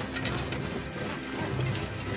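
Battle-scene soundtrack from a TV drama: a dense clatter of clanking armour and weapons over a low, sustained orchestral score.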